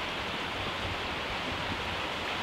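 A steady, even hiss with faint low bumps underneath.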